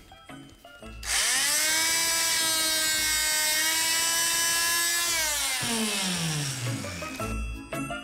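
Electric oscillating multi-tool switched on: it spins up quickly to a steady high buzz, runs for about four seconds, then winds down with falling pitch as it is switched off.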